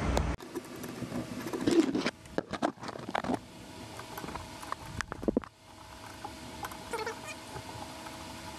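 Irregular small metallic clicks and scrapes of U-bolt nuts being worked onto a leaf-spring U-bolt plate by hand, heaviest in two clusters, the first about two to three seconds in and the second about five seconds in.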